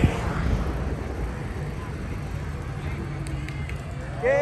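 Wind buffeting the microphone and low rumble while riding a bicycle, loudest at the start and easing after about a second, with faint voices in the background.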